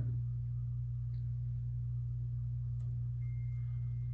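A steady low hum fills a pause in speech, with a single faint click near the end of the third second and a faint thin high tone in the last second.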